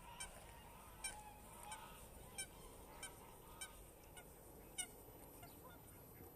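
Geese honking faintly: a series of about eight short honks, roughly one every two-thirds of a second, stopping about five seconds in.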